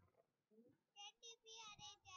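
Near silence, broken about a second in by a child's faint, high-pitched voice saying a few short syllables.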